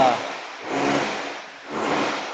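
Faint, muffled speech from a voice further from the microphone, in two short stretches, over a steady hiss of room noise.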